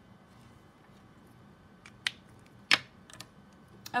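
Copic marker being capped and put down: a few sharp plastic clicks in the second half, the loudest about three-quarters of the way through, with lighter taps after it.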